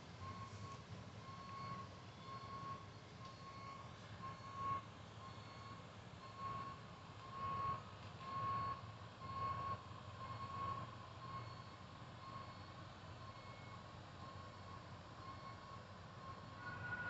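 Faint railroad grade-crossing warning bell dinging steadily, about one and a half dings a second, signalling an approaching train as the crossing gates come down.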